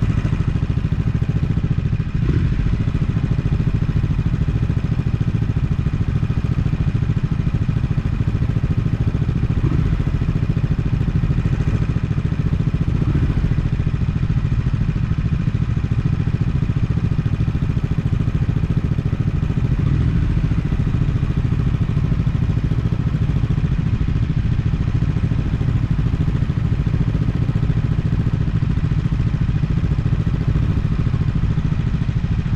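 Triumph motorcycle engine idling steadily at a standstill: a low, even engine note with no revving.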